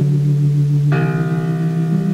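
Old-school dungeon synth: a sustained low synthesizer chord shifts at the start. About a second in, a bell-like struck note enters and rings on over it.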